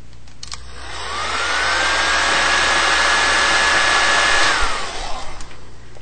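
Handheld hair dryer switched on with a click, its motor whine rising in pitch as it spins up, then blowing steadily. It is switched off about a second before the end, the whine falling and the rush of air dying away.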